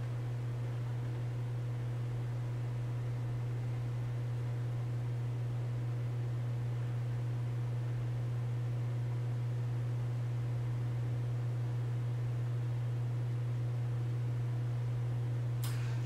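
A steady low hum with a faint hiss over it, unchanging throughout: room tone.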